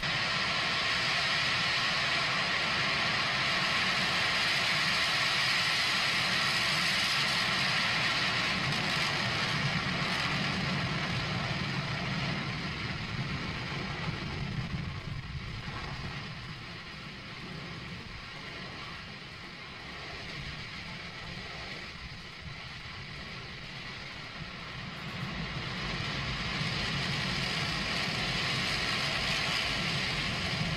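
A single Raptor rocket engine (SN29) firing during Starship SN6's 150-metre hop: a steady rushing roar of rocket exhaust that eases off through the middle and grows louder again near the end.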